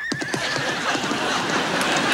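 A horse whinnies with a wavering, trilling call, with a few hoof clops as it moves off. A rising wash of studio-audience crowd noise builds behind it.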